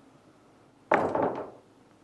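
A single sharp knock about a second in, ringing out over about half a second.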